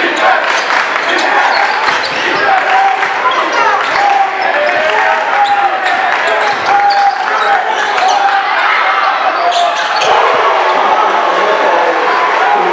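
Live gym sound of a basketball game: a basketball dribbling on the hardwood court and sneakers squeaking, over a steady hubbub of crowd voices and shouts.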